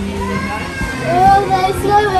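Young children's high voices, chattering and calling out, loudest in the second half.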